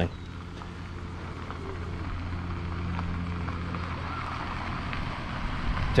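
A minivan driving slowly along a gravel road toward and past, its engine hum and tyres on gravel growing gradually louder.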